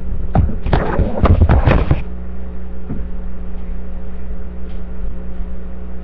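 Handling noise on a headset microphone: a quick flurry of bumps and rustling for about two seconds, then a steady electrical hum.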